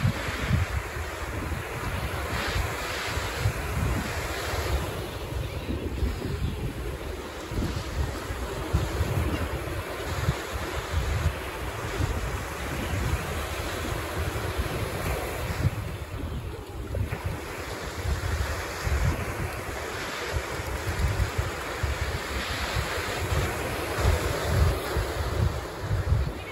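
Small surf breaking and washing up on a sandy beach in repeated swells, with wind buffeting the microphone in low, gusty rumbles.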